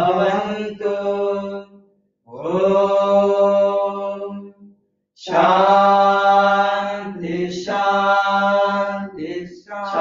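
A voice chanting a devotional mantra in long, held notes, broken by short pauses for breath about two and five seconds in.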